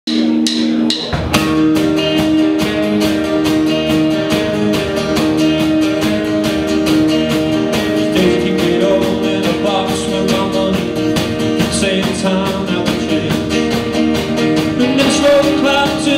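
Live rock band playing a song's instrumental intro on electric and acoustic guitars, bass guitar and drum kit. A few held notes open it, and the full band comes in with a steady beat about a second in.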